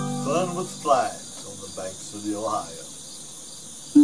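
Ukulele chord ringing out, then a pause filled by steady crickets, with a few short sliding vocal sounds; the ukulele strumming starts again at the very end.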